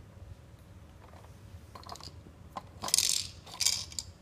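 Plastic toys on a baby's activity-center tray clicking and rattling as the baby handles them: a few light clicks, then two louder rattles about three seconds in and near the end.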